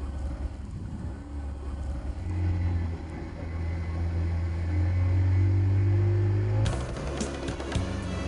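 Small motorboat's engine running, its hum growing louder about two seconds in as the boat picks up speed. Music comes in near the end.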